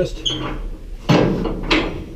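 Metal handling noise at a steam locomotive's firebox door: a brief high squeak, then two scraping clatters about a second in.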